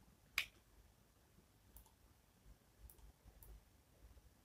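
Computer mouse button clicking: one sharp click about half a second in, then three fainter clicks, over near silence.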